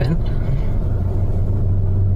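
Steady low rumble with a hum, carried over a recorded phone call in a pause between speakers.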